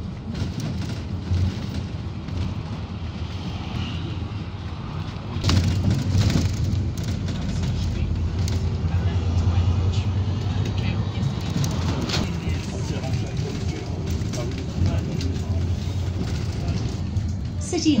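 Inside a moving bus: the engine running and road rumble as it drives along. It gets louder from about five seconds in as the bus pulls away harder, then eases off.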